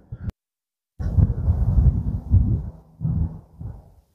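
Wind buffeting the microphone in irregular low rumbling gusts. It cuts out to silence for about half a second early on, then runs in uneven surges that ease off toward the end.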